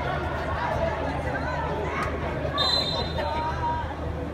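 Spectators and players talking and calling out over one another at a football match, with a steady high tone lasting about a second, starting about two and a half seconds in.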